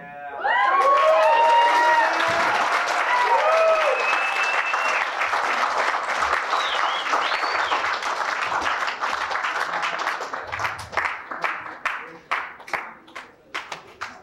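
Audience applause breaking out at the end of a song, with whoops and yells over the first few seconds and a held whistle. The clapping thins to scattered single claps over the last few seconds.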